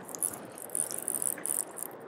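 Fly reel clicking with a rapid, irregular ratchet sound as line is reeled in onto the spool while playing an Atlantic salmon.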